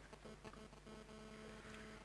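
Near silence: a faint, steady electrical hum under the room tone, in a pause between sentences of speech.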